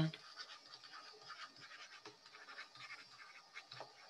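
Faint scratching of a stylus writing on a tablet, in short irregular strokes as words are handwritten.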